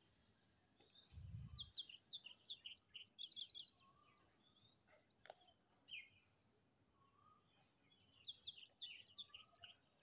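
A bird chirping faintly, in two runs of quick, falling chirps: one starting about a second in and another near the end. A short low thump comes just before the first run, and a single click falls around the middle.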